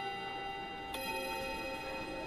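School chime with tubular-bell-like tones. A note struck just before keeps ringing, and a second note is struck about a second in and rings on.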